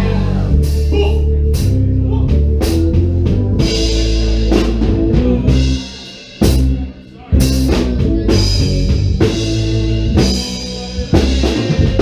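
Band playing live: drum kit, heavy bass, guitar and keyboards at full volume. About six seconds in the band drops out for about a second, punctuated by two sharp hits, then comes back in full.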